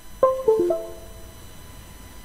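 A short three-note chime: three quick pitched notes in the first second, each a little lower than the one before, ringing on briefly.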